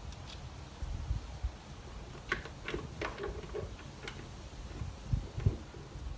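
Scattered plastic clicks and taps as a Honda Odyssey's rear tail-light parts are fitted back together by hand. Two low thumps, the loudest sounds, come near the end as the part is pressed home.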